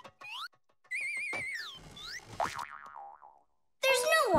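Cartoon sound effects: short whistle-like pitch glides, with a warbling, wobbling tone about a second in that swoops down and back up, then a run of falling glides, used as hop and movement effects for a tiny character. The sound stops just before the end.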